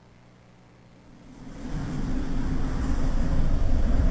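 A low rumbling noise fades in about a second in and grows steadily louder.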